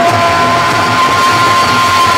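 Post-punk rock band playing live and loud: guitar, bass and drums, with the vocalist holding one long note.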